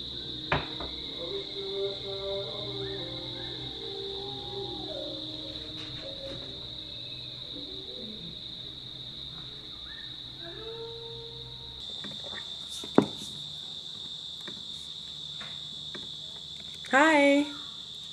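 A steady, high-pitched insect trill, one unbroken note from start to end, with faint melodic notes underneath for the first ten seconds or so and a brief voice about a second before the end.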